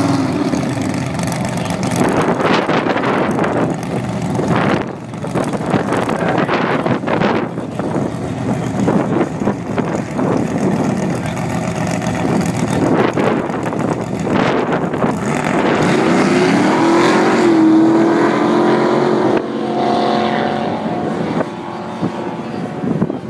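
Drag race cars' engines at the start line: a long stretch of loud, rough engine noise, then an engine revving up with rising pitch and the cars launching off down the strip near the end, the sound falling away as they leave.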